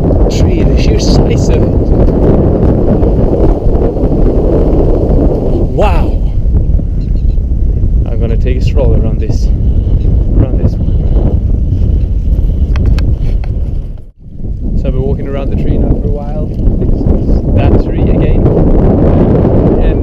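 Strong wind buffeting the camera microphone: a loud, steady low rumble, with faint snatches of a voice buried in it. The sound drops out briefly about 14 seconds in.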